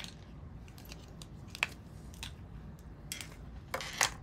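Faint handling noise: a few light clicks and taps, the sharpest a little before halfway through, over low room hiss.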